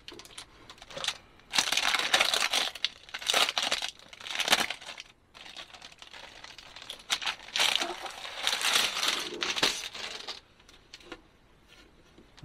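Plastic shrink wrap crinkling and tearing as it is pulled off a new skateboard deck, in two long spells with a short lull between them.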